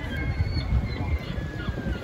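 Gulls calling with a few drawn-out, high cries over wind buffeting the microphone, with faint distant voices underneath.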